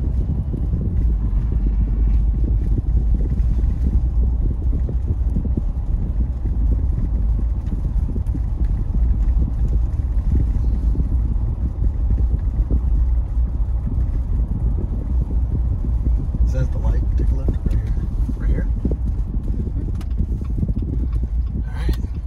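Steady low rumble of engine and tyre noise inside a Jeep Wrangler's cabin as it drives at town speed.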